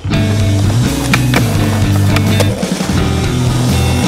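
Skateboard sounds over a background music track: the board rolling, with a few sharp clacks of the deck, the clearest about a second in and near the middle.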